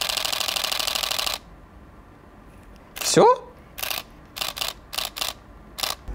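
Canon EOS M6 Mark II mechanical shutter firing a rapid continuous burst for about a second and a half, then a handful of single releases. It is loud and clattering, 'like a bucket of nails being shaken'. A short rising vocal sound comes about three seconds in.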